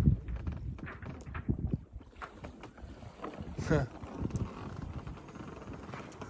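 Sailboat rocking on a slow swell in near calm: irregular knocks and creaks from the boat and its sail shaking, over a low, uneven rumble.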